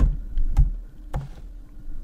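A few keystrokes on a computer keyboard: two or three sharp clicks about half a second apart.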